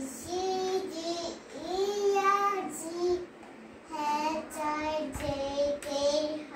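A young girl's voice singing a sing-song chant in several short phrases with held notes and brief pauses between them.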